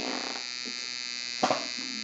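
A steady electrical buzz with many evenly spaced overtones runs throughout, with a short knock or bump about one and a half seconds in.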